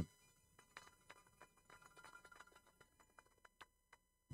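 Near silence, with a few faint scattered clicks.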